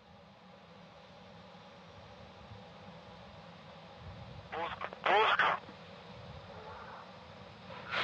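Faint steady low hum of the launch-pad audio feed, broken about halfway through by a short voice call that sounds like it comes over a radio loop, and near the end by a brief burst of rushing noise.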